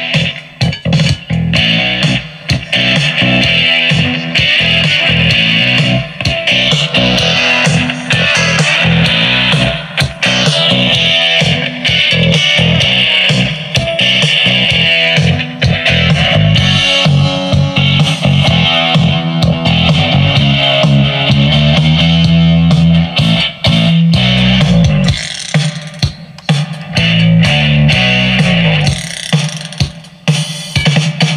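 Instrumental guitar-and-bass music playing loudly over Bluetooth through a ROJEM HBPC1602B portable boom-box speaker, with its two 5.25-inch woofers giving a heavy bass line.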